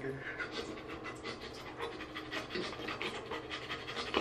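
A man imitating a dog panting: quick, rhythmic breathy huffs with his tongue out, about five a second.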